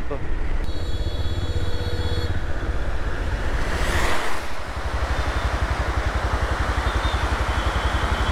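Motorcycle engine running steadily with an even low pulse as the bike rolls and slows to a crawl. A high ringing tone sounds for about a second and a half near the start, and a short rush of noise rises and fades about halfway through.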